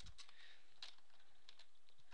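Computer keyboard typing: a few faint keystrokes at an irregular pace.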